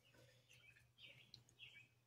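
Near silence: room tone with a low steady hum and a few faint, brief high-pitched sounds.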